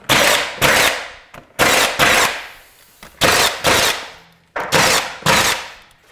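Milwaukee M18 cordless trim nailer firing nails into wood molding: nine sharp shots, mostly in quick pairs about half a second apart, each trailing off over about half a second.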